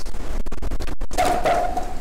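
A sheet of paper rustling and scraping close to a clip-on microphone for about a second, cut by two brief dropouts. A drawn-out voice sound follows.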